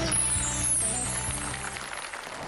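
A broadcast transition sound effect: a high, glittering sweep falling in pitch over backing music, which thins out near the end.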